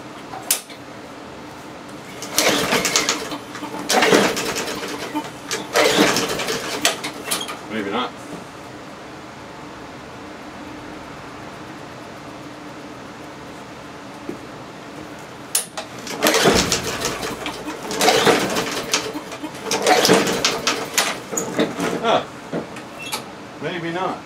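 Weed Eater push mower's small engine being pull-started with its recoil starter: a run of about four pulls in quick succession, a pause of several seconds, then about five more. The engine turns over with each pull but does not keep running.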